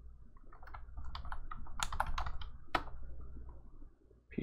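Typing on a computer keyboard: an irregular run of key clicks over a steady low hum.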